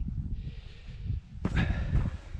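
Wind buffeting the camera's microphone as a steady low rumble, with a short voiced sound about one and a half seconds in.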